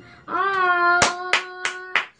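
Four sharp hand claps, about a third of a second apart, in the second half, over a steady held note that ends the song.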